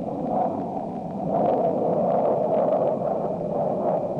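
Jet fighter cockpit noise: a steady roar of engine and rushing air, growing louder about a second in.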